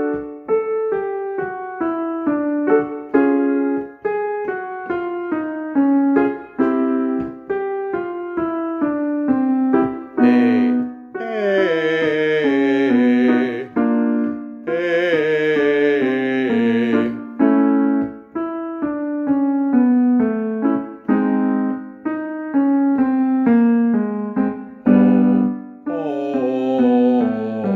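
Piano playing short stepwise vocal warm-up patterns, each repeated on a new starting note, with a man singing the exercise on a vowel. In the middle, the voice twice slides down in pitch.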